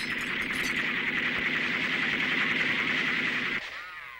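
A cowbell hanging from a cow's neck clanging rapidly and without a break. It cuts off suddenly near the end.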